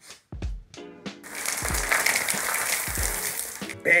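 Dry strawberry granola poured from its bag into a plastic bowl, a steady rustling hiss lasting about two and a half seconds, over background music with a steady beat.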